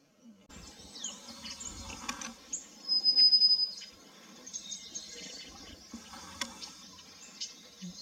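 Small forest birds calling: a scatter of high chirps and short trills, with one loud, steady, high whistle held for just under a second about three seconds in.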